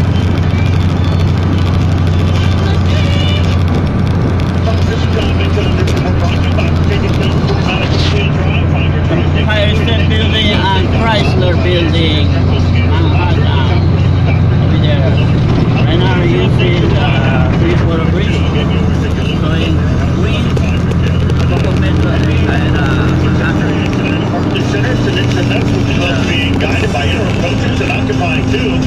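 Steady low drone of a car's engine and tyres heard from inside the moving car, with indistinct voices over it.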